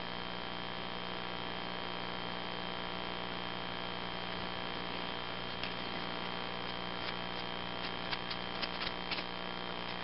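Steady electrical mains hum with a faint hiss. In the second half there are a few faint, short clicks and taps as the nylon cord is handled.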